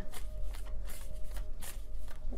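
A tarot deck being shuffled by hand: a quick, irregular run of cards rustling and flicking against one another.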